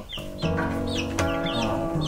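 Baby chicks peeping: repeated short, falling peeps, several in quick succession, with guitar music playing underneath.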